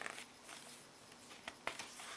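Faint handling sounds from the paper pages of a doodle book: soft rustling with a few short taps, one at the start and two close together about one and a half seconds in.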